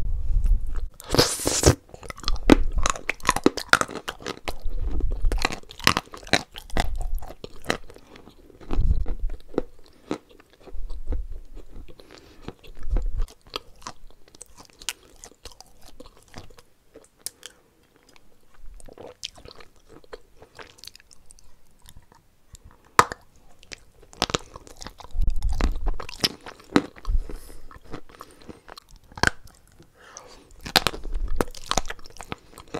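Close-miked chewing of soft, wet white chalk paste: crackling, crunching bites and moist mouth sounds. These are densest in the first half, thin out in the middle, and pick up again near the end, with a few dull thumps.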